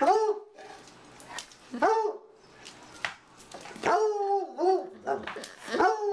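Treeing Walker Coonhound baying: a series of short, pitched barks, each rising and falling in pitch, about one a second at first and coming faster near the end.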